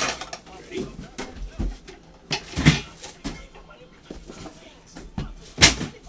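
Cardboard trading-card boxes being handled and set down on a table: a few sharp knocks with scraping in between, the loudest near the end.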